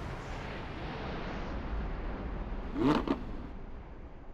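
A sports car's rumble, a steady noisy roar that slowly fades, with a short laugh about three seconds in.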